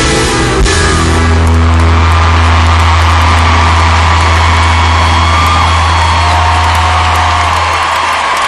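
A live country band's closing chord ringing out: a last drum hit, then a low bass note held steadily while the crowd's cheering swells over it. The recording is loud and distorted from close to the stage.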